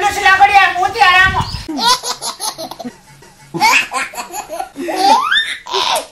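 A man's voice laughing and vocalising without words in long, drawn-out sounds. It breaks off about two seconds in and resumes after a second or so, with a rising pitch near the end.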